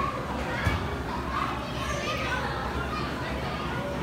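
Many children's voices and chatter overlapping in a busy play area, with one short knock just over half a second in.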